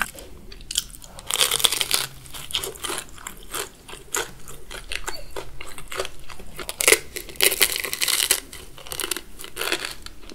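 Close-miked crunching and chewing of a Korean corn dog's crispy deep-fried coating: irregular crackling bites. The loudest bursts come about a second in and again around seven to eight seconds in.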